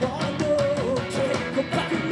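Punk rock band playing live: a male voice singing a melody over electric guitars, bass and drums.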